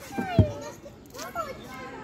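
Young children's high-pitched voices calling out at play, with a short low thump about half a second in.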